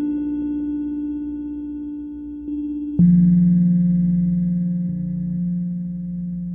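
Ambient drone music from hardware synthesizers: a held synth note fades slowly, then a new, lower note is struck sharply about halfway through and rings on, fading.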